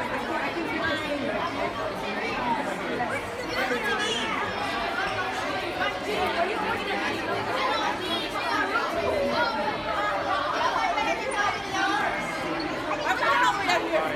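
A crowd of schoolchildren chattering, many voices overlapping at once with no single voice standing out.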